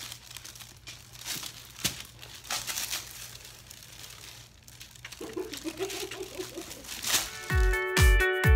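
Paper sheet on a medical exam table crinkling and rustling as a baby wriggles on it, with a short wavering vocal sound from the baby about five seconds in. Near the end, electronic music with a deep thudding beat starts.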